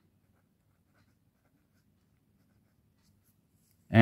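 A pen writing on paper, faint scratching strokes as a short label is written.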